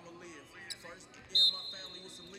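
A whistle blown in a gym: a loud, steady, high tone that starts sharply about two-thirds of the way in and is held past the end, over voices. A single short knock comes a little before halfway.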